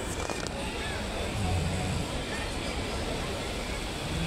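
Indistinct background voices over a steady hall din, with no words clear enough to make out.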